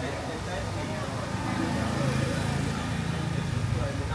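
Steady low hum of motor traffic, with faint voices in the background.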